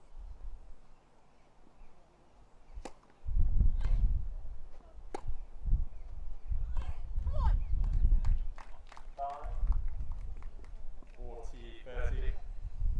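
Tennis rally on a grass court: a serve and a series of sharp racket hits on the ball, a second or so apart, over a low rumble. A voice calls out near the end as the point ends.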